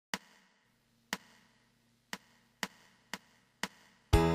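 Six sharp clicks counting in a song at a steady tempo: two clicks a second apart, then four quicker ones half a second apart.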